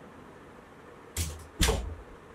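Two knocks about half a second apart, the second louder: a coffee mug being set down on a desk.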